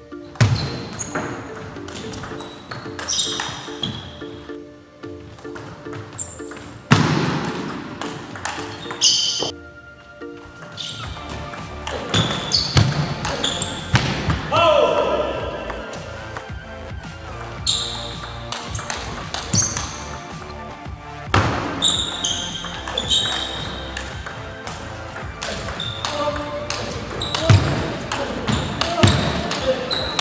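Table tennis rally: the celluloid ball clicking off the bats and bouncing on the table again and again, with background music playing.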